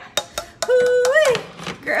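A few quick metal clinks of a serving spoon against a stainless-steel saucepan, then a woman's long drawn-out exclamation of delight, held on one pitch and then sliding up.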